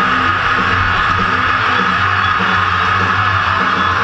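Deathcore backing track played loud through a PA: distorted electric guitars and drums, with a harsh high sound held steady over them.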